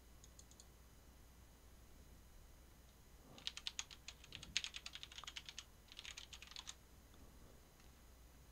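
Computer keyboard typing: a few faint clicks near the start, then about three seconds of quick keystrokes in three short runs from a few seconds in.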